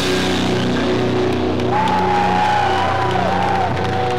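Live rock band's distorted electric guitars and bass ringing out on held notes, as heard through a heavily distorted camcorder recording. A high wavering tone comes in about two seconds in.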